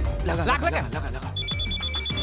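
Mobile phone ringing: a pulsed electronic two-tone ring starts about one and a half seconds in, over background film music. Just before it comes a brief wavering vocal sound.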